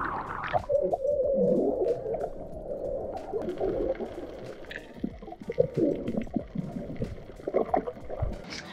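Muffled underwater sound from a submerged action camera while snorkelling: a burst of splashing as it goes under the surface, then a low, muffled water noise with gurgling and scattered clicks.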